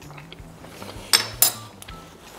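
A metal fork clinking twice against a frying pan, about a third of a second apart, over soft background music.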